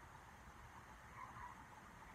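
Near silence: faint steady background hiss, with one very soft brief sound a little over a second in.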